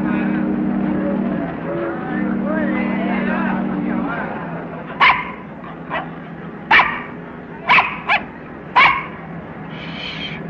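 A puppy yapping: about six short, sharp yaps in the second half, some in quick pairs. Before that, voices call over a steady low drone.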